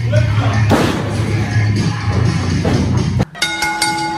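Wrestling entrance music with a heavy beat, cut off suddenly about three seconds in, followed by a ring bell struck several times in quick succession to start the match.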